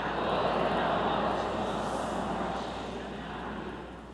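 Many voices of a congregation speaking together, blurred by the church's reverberation into a steady murmur that swells at first and slowly fades.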